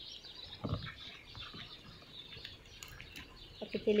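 Small birds chirping in the background, many short high chirps scattered throughout, with a single low thump about a second in.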